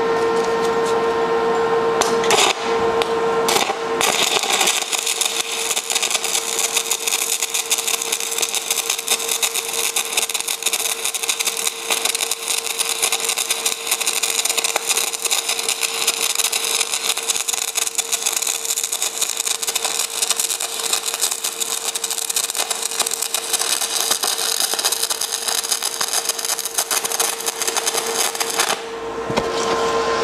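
Shielded metal arc (stick) welding with a 7018 electrode on steel, laying a fillet weld: the arc makes a steady, dense crackle. Two brief strikes come at about two and a half and three and a half seconds in. The arc then catches at about four seconds and burns continuously until it is broken shortly before the end.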